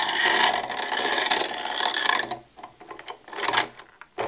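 Steel saw-blade magnet plate sliding down a threaded steel rod, its centre hole rattling and scraping over the threads in a fast ratchet-like clatter for about two seconds. A shorter rattle follows near the end as the plate settles.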